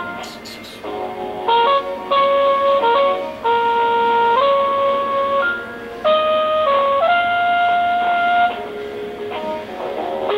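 Telephone hold music coming through a cordless phone's speaker: a melody of held, steady notes changing about once a second, sounding thin and cut off in the treble like a phone line.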